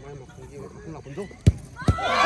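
A football kicked for a penalty: a sharp thud of boot on ball about one and a half seconds in, then a second thud less than half a second later as the ball is met at the goal, over low murmuring from the spectators.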